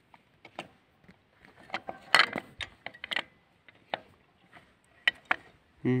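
Irregular metal clicks and clinks of drum-brake shoes and their return springs being handled against the brake backing plate of a Ural motorcycle hub, with a louder clatter about two seconds in.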